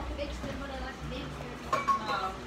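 Quiet, indistinct talking, with a louder voice near the end.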